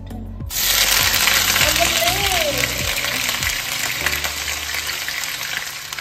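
Chopped onion tipped into hot oil in a wok, frying with a loud sizzle that starts suddenly about half a second in. A brief rising-then-falling tone sounds over it about two seconds in.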